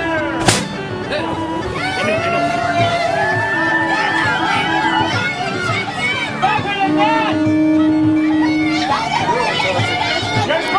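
Music with held droning notes over a babble of voices. A single sharp bang about half a second in: a black-powder cannon shot.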